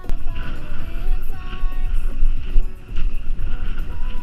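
Background music playing over loud wind buffeting and trail rumble from a mountain bike rolling over rough ground, picked up by the bike's action camera; the rumble comes in suddenly at the start.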